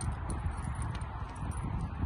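Footsteps on a paved path over a low, uneven rumble.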